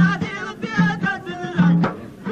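Amazigh folk song: men singing a wavering, ornamented melody over a repeating low beat, with a sharp click near the end.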